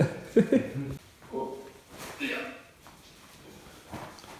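A man's voice: a few short, untranscribed utterances with quiet room sound between them.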